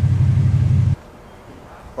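A loud low rumble that cuts off suddenly about a second in.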